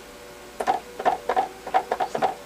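Paint sponge dabbed repeatedly into paint on a palette: a quick series of soft taps, about four to five a second, starting about half a second in.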